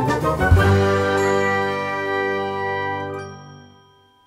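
Logo jingle of chime and bell tones, with a struck accent about half a second in; the notes then ring on and fade away near the end.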